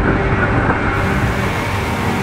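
Loud, steady rush of wind and seawater on the deck of an ocean-racing yacht sailing fast downwind, with a wave washing over the deck.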